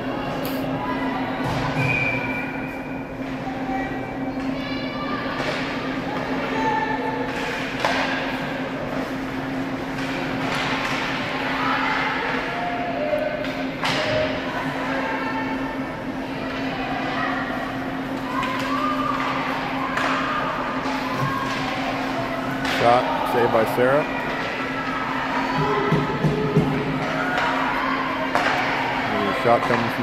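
Ice hockey play in an arena: a steady low hum runs underneath, with occasional sharp knocks of sticks and puck and scattered distant shouts from players and spectators.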